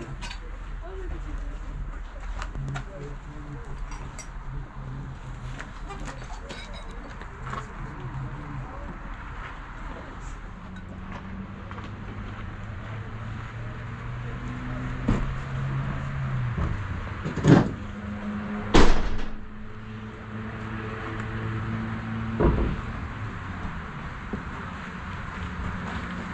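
A vehicle engine running with a steady hum, joined by a deeper steady tone from about ten seconds in. Three loud thumps come in the second half, like doors being shut.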